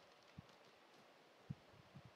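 Near silence with faint room tone and two short, faint clicks about a second apart, from keys on a computer keyboard as a text prompt is edited.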